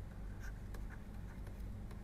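Faint scratching and light ticks of a pen stylus writing on a tablet screen, over a steady low hum.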